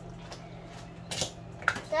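Hand-held manual can opener clicking against the rim of a tin can, with two sharp metallic clicks in the second half, as a child struggles to get the opener to cut.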